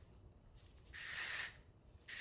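Aerosol hairspray can sprayed once: a short hiss lasting about half a second, starting about a second in.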